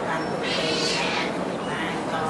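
A voice amplified through a microphone and loudspeakers, rising to a brighter, higher stretch from about half a second in to about a second in.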